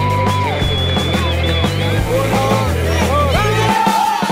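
Background music with a steady bass line and a held, gliding melody over it; the bass drops out near the end.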